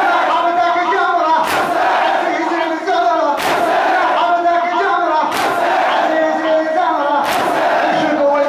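A large crowd of men chanting a Shia mourning lament (latmiya) together, with a loud unison chest-beating slap about every two seconds, four in all.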